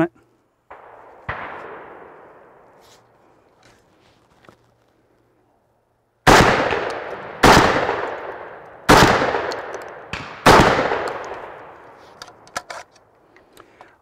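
Century Arms SAS 12 semi-automatic 12-gauge shotgun fired four times, the shots about one and a half seconds apart, each followed by a long echo dying away. A much fainter clack comes about a second in, before the shooting.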